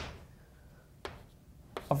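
Chalk tapping and writing on a blackboard: three short sharp taps, one at the start, one about a second in and one near the end.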